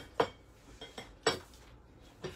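Ceramic plate clinking as it is handled: two sharp clinks about a second apart, with a few fainter taps between them.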